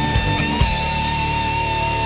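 Hard rock music: an electric lead guitar holds one long sustained note with a slight vibrato over the band.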